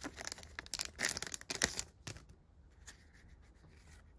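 A trading card pack wrapper being torn open and crinkled by hand, a quick run of sharp crackles that dies away about halfway through, leaving only faint handling noise.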